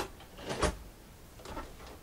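Domestic sewing machine giving a few short mechanical clacks while stitching at the end of a seam, plausibly back-stitching; one louder clack about half a second in, then a few fainter clicks.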